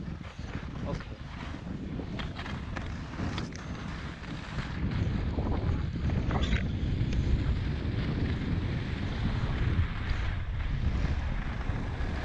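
Wind buffeting an action camera's microphone while skiing downhill, mixed with the scrape of skis on snow; the rush gets louder about four seconds in as the skier picks up speed.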